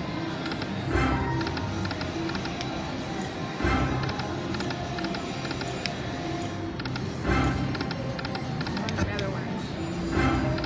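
Buffalo Gold slot machine spinning its reels again and again with no win: its electronic spin-and-reel-stop jingle repeats about every three seconds, with quick ticking reel-stop notes between swells, over casino chatter.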